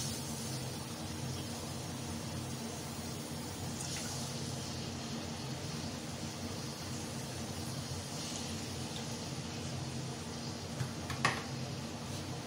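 Cooking oil poured from a bottle into a metal ladle and tipped into a large metal pot, over a steady low hum; a short sharp click near the end.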